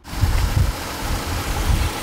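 Outdoor background noise: an even hiss with a deep low rumble that swells twice.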